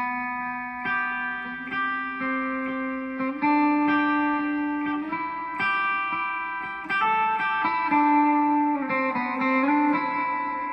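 Clean electric guitar picking major-scale notes across two strings, about a dozen notes, each ringing for around a second and often overlapping so that two notes sound together.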